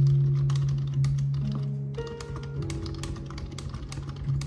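Fingers typing quickly on a low-profile computer keyboard, a rapid run of light key clicks, over background music with a steady bass line.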